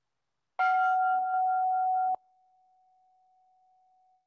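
A single struck bell-like chime with a clear pitch rings out about half a second in, marking the start of a minute of silent prayer. It rings loudly for about a second and a half, then cuts off suddenly to a faint tone of the same pitch that fades out.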